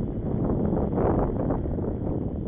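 Wind buffeting the microphone of a camera on a moving bicycle, a steady low rumble with the bike's rolling noise on a concrete footpath.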